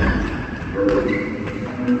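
Men's voices in an indoor basketball gym. A few short thumps, of the basketball bouncing on the wooden court, come at the start, about a second in, and near the end.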